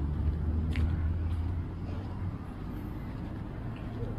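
Low, steady rumble of a vehicle engine running, easing off about a second and a half in, with a few faint ticks.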